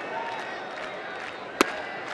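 Ballpark crowd murmuring, then about one and a half seconds in a single sharp pop as an 89 mph pitch lands in the catcher's mitt for a called third strike.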